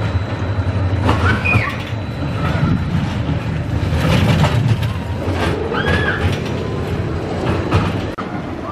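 A Gerstlauer spinning roller coaster car running along its steel track with a rumble that grows loudest as it passes close, about halfway through.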